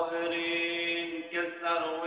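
A man singing the opening of a mawwal, starting abruptly on a long held note and shifting to another pitch about halfway through.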